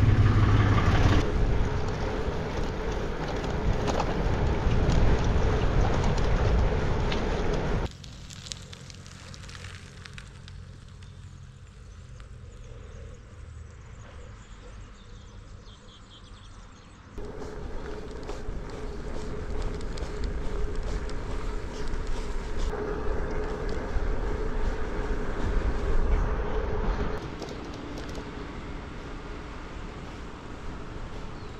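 Wind rushing over a handlebar-mounted camera and road rumble from a bicycle being ridden along a village road, with a steady hum under it. About eight seconds in it drops to much quieter outdoor ambience for about nine seconds, then the riding noise returns until shortly before the end.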